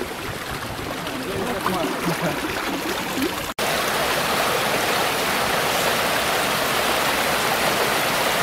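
Water pouring through a wooden pond spillway in a steady, loud rush that cuts in abruptly about halfway through. Before it, quieter outdoor noise with faint voices.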